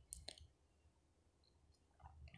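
Near silence, with two faint clicks close together at the start: pearl beads knocking together as the nylon wire is handled and knotted.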